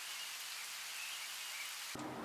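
Soft, steady hiss of rain falling.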